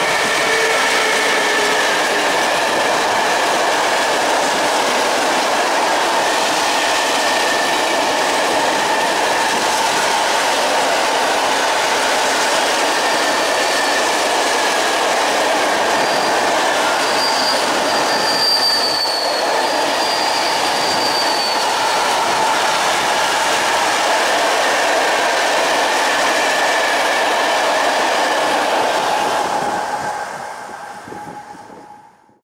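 A freight train hauled by an ET22 electric locomotive passing close by, with a long rake of open coal wagons rolling past on steel wheels. Steady rolling noise with thin squealing tones from the wheels throughout, and a higher squeal a little past the middle.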